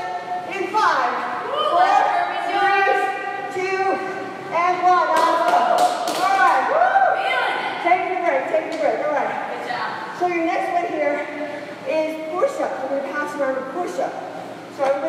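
People's voices talking throughout, not made out as words, with a few thuds or taps.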